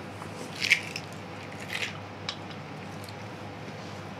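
A spatula folding thick peanut butter cookie dough in a stainless-steel mixing bowl: a few short squelching scrapes, the loudest less than a second in and another near the middle, with light ticks of the spatula on the bowl.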